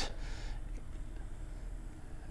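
Small USB LED clock fan running with a faint, steady whir.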